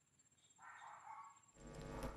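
Near silence, with a faint brief sound a little under a second long about halfway through. A faint outdoor background rises near the end.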